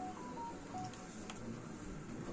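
A quick run of short electronic beeps at changing pitches in the first second, over a faint murmur of voices.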